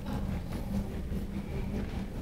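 Low, steady rumble with a faint hum: the background noise of a large meeting room, with no one speaking.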